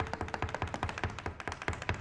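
Irish step dancer's hard shoes tapping a stage floor in a rapid, even stream of taps, with a faint held musical note under it in the first moments.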